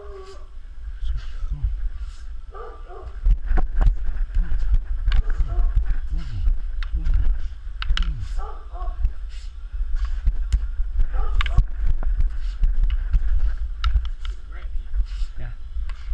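Rattan practice sticks clacking together in sharp, irregular strikes during a two-man stick-fighting drill; the hits come faster and louder from about three seconds in. Short grunts and exclamations fall between the strikes, over a low rumble of movement on a head-worn camera.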